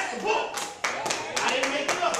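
Hand clapping in a quick, steady rhythm of about five claps a second, starting about half a second in, over a man's loud, drawn-out calling voice.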